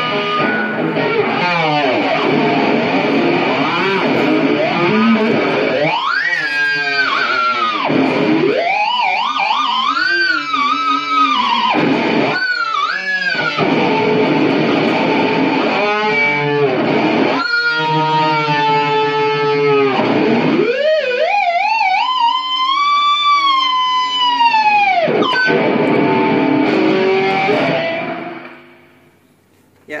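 Distorted Artrock electric guitar holding long, sustained notes and harmonics that glide up and down in wavering arcs, worked with the locking tremolo bar. The sustain comes from the playing and the distortion, not from a Sustainiac sustainer pickup. The sound dies away near the end.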